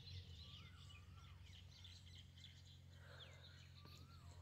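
Near silence with faint birds calling in the background: a few thin whistled chirps that glide up and down in pitch, about a second in and again near the end, over a low steady hum.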